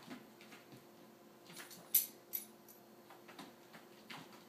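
A cat's paws and claws scrabbling and skidding on a hardwood floor as it pounces, a scatter of irregular taps and scrapes, the loudest a sharp scrape about two seconds in.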